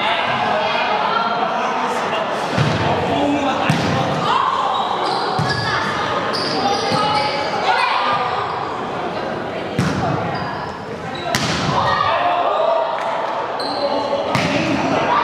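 Indoor volleyball play in an echoing sports hall: players and spectators calling and chattering throughout, with sharp knocks of the ball being hit, the clearest near the end.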